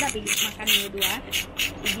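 Someone sucking and slurping the meat out of a small snail shell held to the lips: a quick run of about six short, hissy sucking noises.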